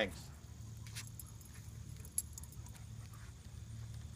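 Faint metallic jingling of a Great Dane's collar tags, a few light tinkles, over a steady low hum.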